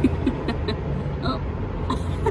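Road traffic running steadily on a busy city street: a continuous low rumble of passing cars and buses.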